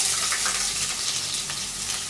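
Chopped red onions sizzling in hot oil in a kadai, a steady hissing fry that is loudest just after they drop in and eases slightly.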